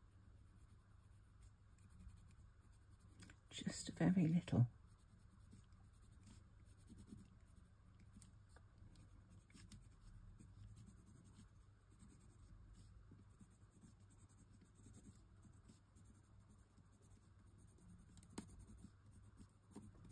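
Faber-Castell watercolour pencil scratching lightly over textured linen cardstock as grey is shaded onto die-cut brickwork. A brief voice sound comes about four seconds in.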